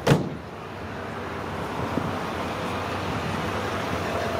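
A single sharp knock right at the start, then steady road-traffic noise that slowly grows louder.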